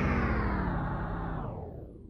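Closing rock music ending on a held chord that fades away.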